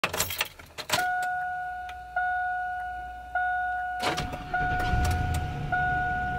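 Clicks and a jangle of keys, then a truck's dashboard warning chime ringing one note about every 1.2 seconds. About four seconds in the engine starts and runs at a steady idle under the chimes.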